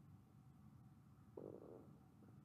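Near-silent room tone with one short, faint stomach gurgle lasting about half a second, just past the middle.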